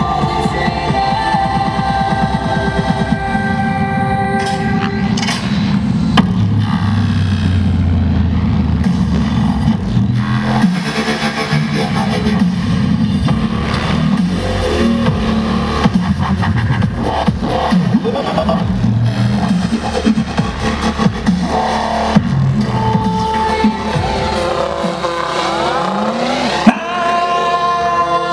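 Music plays loudly throughout. Under it the rotors and electric motor of an Align T-Rex 700E RC helicopter can be heard as it flies aerobatics.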